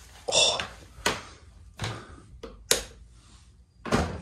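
Wooden room door being unlocked and pushed open: a short rush of noise, then several sharp clicks and knocks from the lever handle, latch and door.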